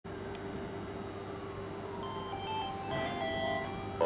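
Railway station public-address chime: a short melody of bell-like notes starting about halfway in, the signal that a train announcement follows. Beneath it is a steady electrical hum and a faint whine that falls and then rises again in pitch.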